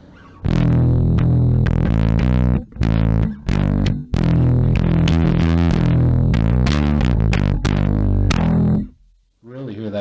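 Electric bass played fingerstyle through a Sushi Box FX Dr. Wattson preamp pedal (modelled on the HiWatt DR103 preamp) with its gain all the way up: a gritty overdriven tone, compressed so the notes squish when the strings are dug into. The playing stops about nine seconds in.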